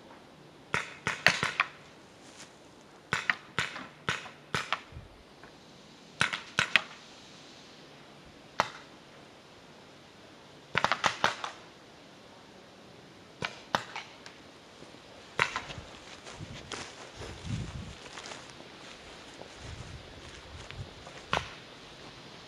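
Paintball markers firing in short bursts of quick pops, with pauses between volleys and a few single shots. In the last few seconds the shots thin out and low rustling and bumping noise from movement takes over.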